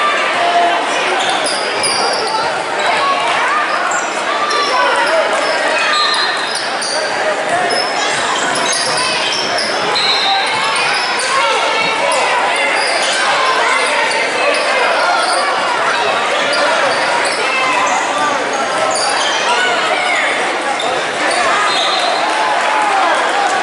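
Youth basketball game in a school gymnasium: many voices of spectators and players talking over one another, with a basketball bouncing on the hardwood floor, echoing in the hall.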